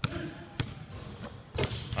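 A basketball being dribbled on a hardwood gym floor: a few sharp bounces, the clearest about a second apart.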